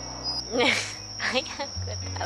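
Crickets singing: a steady, high-pitched trill that runs on without a break. A woman laughs about half a second in and says a few words.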